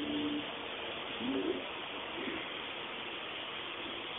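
A few short, low bird coos, faint over a steady hiss: a brief held note near the start, then a curving call about a second and a half in and a fainter one after two seconds.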